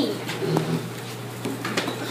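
A few soft clicks of computer keyboard keys being pressed, over a steady low hum, with a brief faint low coo-like sound about half a second in.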